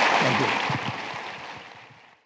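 Audience applauding, fading away over the last second or so.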